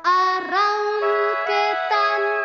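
Children's song: a sung melody, heard as children's voices, over instrumental backing, with a new phrase starting right at the beginning and moving through several held notes.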